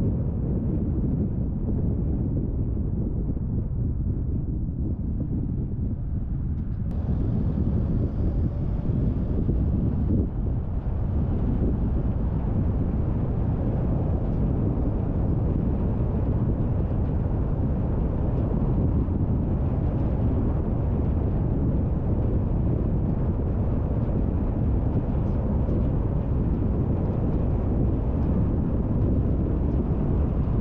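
Steady low rumble of road and wind noise from a car driving at speed, a little brighter and hissier from about seven seconds in.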